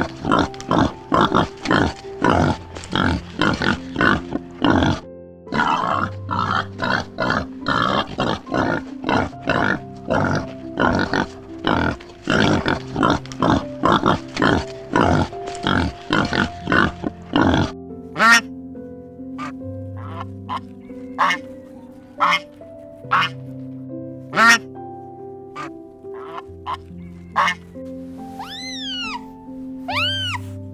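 Common warthog chewing grain close up, a fast run of crunching clicks that thins to occasional crunches after about 18 seconds, over steady background music.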